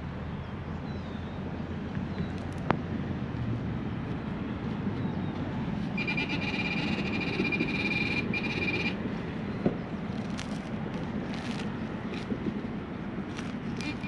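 Handheld metal-detecting pinpointer sounding a steady high alert tone for about three seconds, starting about six seconds in, as it closes on a shallow target in the turf, with a brief second alert near the end. Light scratching and rustling of grass and soil being worked by hand over a low steady background noise.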